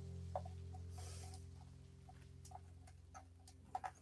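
Faint handling noise: small, scattered clicks and taps of a plastic floodlight mounting plate and its wires as they are pushed through a tight rubber gasket. A low steady hum fades out about halfway through.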